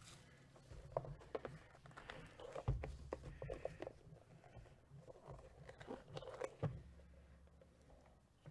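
Faint handling noise of a small cardboard box being turned over in the hands: scattered light clicks, rubs and scrapes, with a slightly louder knock about a third of the way in and another near the end.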